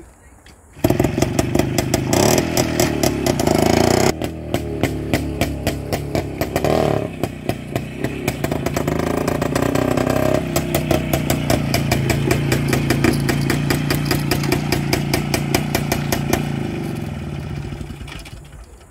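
WSK two-stroke single-cylinder motorcycle engine bursting into life about a second in, revving, then running as the bike rides off and comes back, dying down near the end as it is parked.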